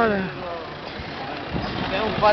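Street noise with a motor vehicle engine running nearby, a steady rumble under a voice that trails off in the first moment.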